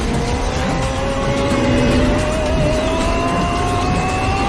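Battle sound effects and score of an animated fight scene: a whine rising slowly and steadily in pitch over a dense rumble, with music underneath.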